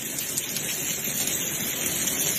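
Steady rain falling on stone steps and a cardboard TV box.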